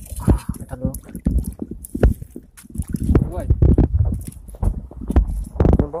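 Irregular splashing and sloshing of shallow water as a hand gropes for fish between rocks, with short dull knocks, under brief excited exclamations.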